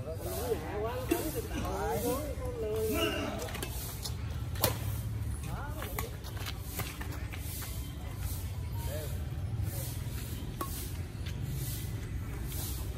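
Men's voices calling out on the court, then a badminton rally: a string of sharp pocks of rackets striking the shuttlecock over about three seconds in the middle, the first one the loudest. A steady low rumble of city traffic runs underneath.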